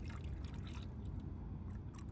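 Thin stream of distilled water pouring from a plastic gallon jug into a plastic cup of coolant concentrate, faint and steady, mixing a roughly 50-50 coolant solution.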